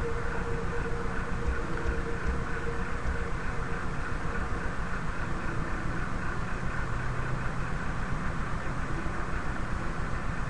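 Steady rumbling noise with a fast, even ripple in its loudness and a faint hum that fades out in the first few seconds.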